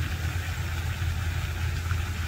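Steady low rumble with an even hiss above it, unchanging throughout.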